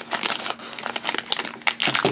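Crinkling and crackling of a shiny plastic blind bag as it is cut open with scissors and handled.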